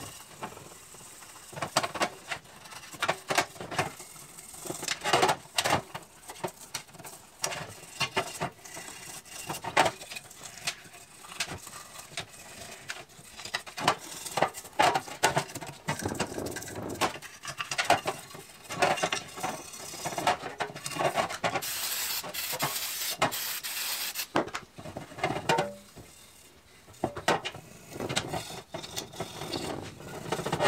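Gun-cleaning brush scrubbing paint off shotgun parts in a metal trough: irregular rasping strokes, some quick and some drawn out. About two-thirds of the way through there are roughly three seconds of steady hiss from an aerosol spray, the brake cleaner used to dissolve the paint.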